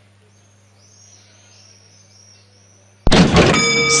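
Faint bird chirps over a quiet racecourse, then about three seconds in the horse-racing starting gates spring open with a sudden loud clang and a ringing start bell as the field breaks.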